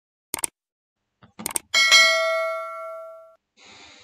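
Subscribe-button animation sound effects: mouse clicks, then a bright notification-bell ding that rings out and fades over about a second and a half, followed by a faint swish near the end.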